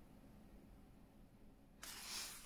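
Near silence, then near the end the soft rustle of a book's paper page starting to turn.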